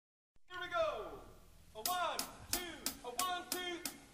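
A voice quietly calling out a few short words, one falling syllable followed by a quick run of four or five short ones.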